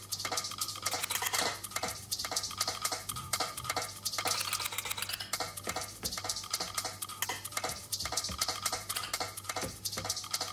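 Rane One DJ controller being played by hand: rapid plastic clicks and taps from fingers on its performance pads, buttons and platter, over a steady low hum.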